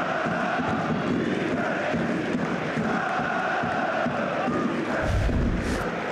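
A big football crowd chanting in unison, a steady sung chant filling the stadium. A low rumble rises under it about five seconds in.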